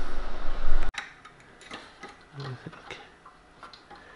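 Faint, scattered small clicks and ticks of hands and a tool working inside an opened bench frequency counter, adjusting its quartz timebase against a GPS reference. The clicks follow a sudden drop in background hum about a second in.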